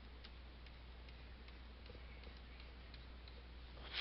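Faint light ticks, about two or three a second, from a pen or stylus tapping a drawing surface as it makes quick shading strokes, over a steady low hum.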